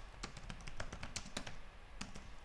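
Typing on a computer keyboard: separate keystroke clicks at an uneven pace, a few a second.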